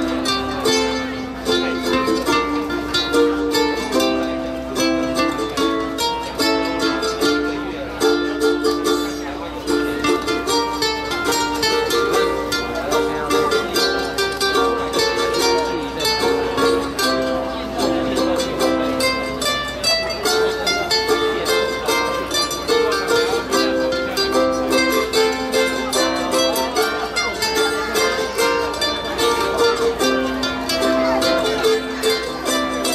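An ensemble of ukuleles strumming chords together in a steady rhythm, with a melody moving over the chords.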